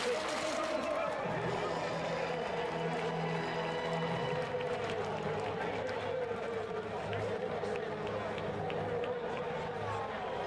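Stadium crowd noise in a floodlit athletics stadium just after a race finish, with music over the public address coming in about a second and a half in.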